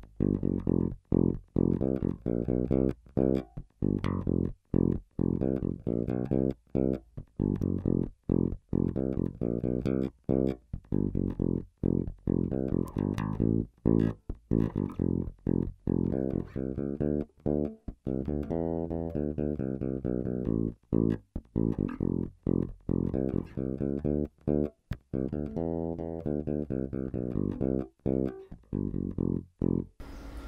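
Warwick Rock Bass Corvette electric bass played through its bridge pickup alone. A rhythmic groove of short plucked notes with frequent brief silences between them.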